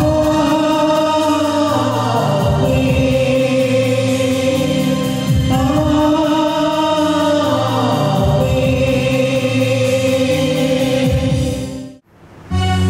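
A choir sings a Christian hymn with long held notes over a sustained instrumental accompaniment, and the sound fades out near the end.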